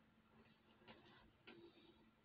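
Near silence with a few faint, small clicks of a metal jump ring and beads being handled in the fingers as a bead dangle is hooked onto a beaded bracelet.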